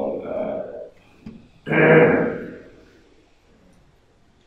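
A man's voice reading a text aloud into a microphone: two short phrases, the second louder, then a pause.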